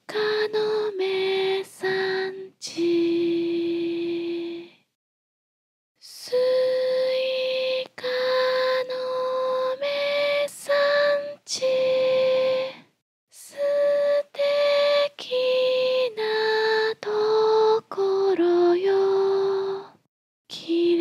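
A woman singing a Japanese children's song unaccompanied as a slow lullaby. The phrases are made of held notes, with a short silent breath of about a second partway through.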